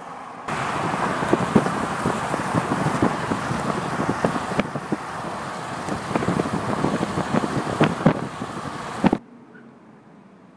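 Road and wind noise from a moving car, with the microphone buffeted into dense crackles and pops. It starts suddenly and cuts off abruptly shortly before the end.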